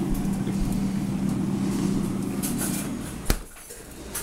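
Countertop blender motor running steadily with a low hum, then a sharp click about three seconds in, after which the motor sound is gone.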